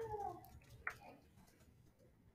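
A short cry, about half a second long, falling in pitch, followed just under a second in by a single sharp click.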